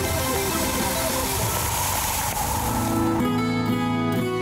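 Television news ident music: a rushing noisy sweep over shifting notes, then about three seconds in a new jingle with sustained notes starts.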